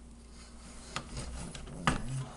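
A hand handling a desktop PC's CPU cooler and its plastic shroud: rubbing and scraping from about a second in, with a sharp click near the end.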